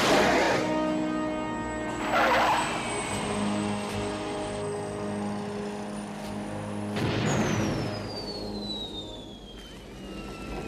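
Small jet aircraft whooshing past three times, about two and five seconds apart, with a long falling whine after the last pass, all over an orchestral film score.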